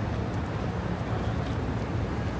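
Steady city street noise: a low rumble of road traffic, with no single sound standing out.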